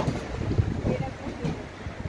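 Wind buffeting the microphone: an unsteady low rumble, with faint speech under it.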